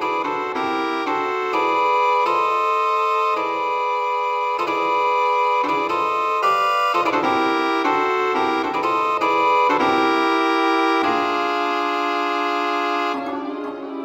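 Electronic organ voice from a MIDI keyboard setup playing sustained chords that change about once a second, with a longer held chord near the end.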